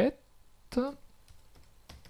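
Computer keyboard keystrokes: a few scattered, separate key presses as a word is typed.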